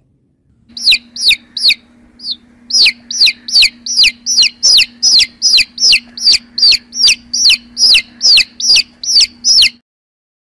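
Baby chicks peeping: a run of loud, high-pitched calls that each fall sharply in pitch, about three a second, starting about a second in with a brief pause near two seconds, over a faint steady low hum.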